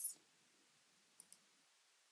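Two faint computer mouse clicks in quick succession about a second in, clicking an on-screen button; otherwise near silence.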